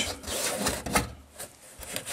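Close rubbing and scraping of hands working along the cut sheet-metal edge of the body, right at the microphone, with one sharp click about a second in.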